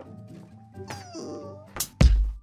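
A short, soft whimpering cry that falls in pitch about a second in, over quiet background music. A loud beat of music comes in near the end.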